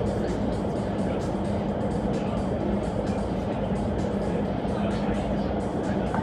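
Indoor skydiving vertical wind tunnel running: a steady rush of air with a constant low fan hum, heard through the glass wall of the flight chamber.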